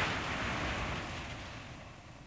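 A Holden Astra splashing through water: a noisy rush of spray that fades steadily away.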